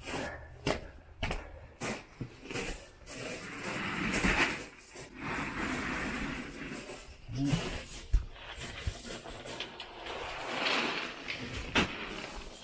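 Gravel crunching under the pneumatic tyres of a Gorilla Carts poly garden dump cart loaded with gravel as it is pulled along a gravel path, with irregular knocks and rattles from the cart's frame and stones.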